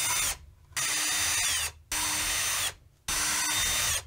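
Cordless drill boring small 3.5 mm holes through a plastic project box at slow speed. It runs in four short bursts, each cut off sharply.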